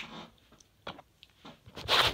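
Small handling noises: a sharp click at the start, then a few faint taps and clicks, and a short rush of noise near the end.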